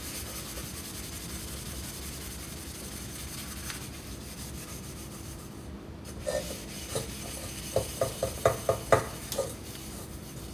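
Scrub sponge rubbing hard on a stainless steel pot, scouring off burnt-on pudding. A steady scrubbing rasp, then a run of short squeaks, about three a second, over the last few seconds as the sponge grips the steel.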